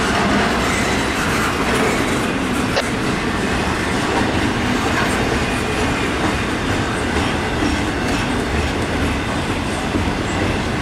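Intermodal freight cars (double-stack container cars and trailer flatcars) rolling past close by: a steady rumble of steel wheels on rail, with one sharp click a little under three seconds in.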